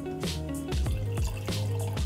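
Whisky poured from a bottle, trickling and dripping into a glass, under steady background music.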